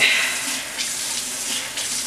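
Water running steadily from a bathroom tap, used to wet hair, with a brief louder rush right at the start.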